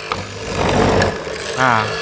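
A 750-watt (1 hp) benchtop hollow-chisel mortiser running with a steady motor hum, its square chisel and auger plunged into soft wood. For about a second the cut is loud and rough, then the sound settles back to the motor's hum.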